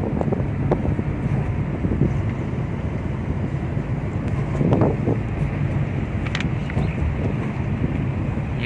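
Car running noise heard from inside the cabin while driving slowly: a steady low engine and road rumble with an even hum.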